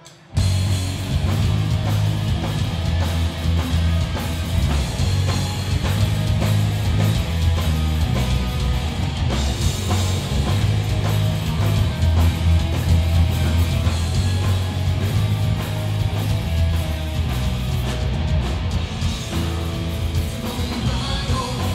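Hardcore punk band playing live: electric guitars, bass and drum kit come in together abruptly about half a second in and play on loud and steady.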